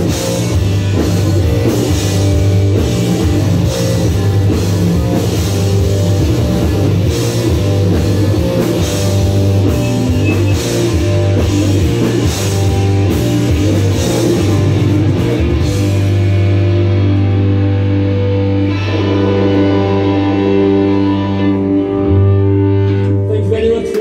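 A live rock band plays loud, with drums, bass guitar and electric guitars. About two-thirds of the way through the drums stop and the bass and guitars hold long ringing chords as the song closes.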